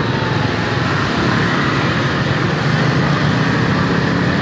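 Steady traffic noise while moving through a street full of motorbikes: engines running and road rumble, even throughout with no sudden sounds.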